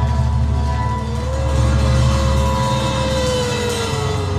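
Live psychedelic noise-rock music: a heavy low drone under a sustained siren-like tone that slides up about a second in, holds, and sinks back down near the end.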